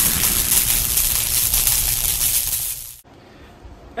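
Fading tail of a channel intro's sound effect: a wash of noise, strongest in the highs, that slowly dies down and cuts off about three seconds in, leaving quiet room tone.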